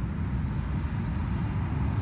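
Wind buffeting the microphone: a steady, fluttering low rumble.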